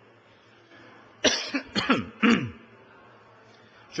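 A person coughing three times in quick succession, each cough falling in pitch, about as loud as the speech around it.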